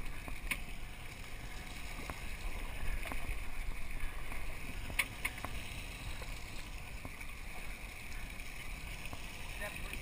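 Steady rush of churning water along a fishing boat's hull under a low rumble, with wind on the microphone and a couple of sharp clicks, one near the start and one about halfway.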